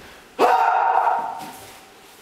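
A man's loud shout during a kung fu staff form, starting suddenly about half a second in with a quick rise in pitch, held for about a second and then fading.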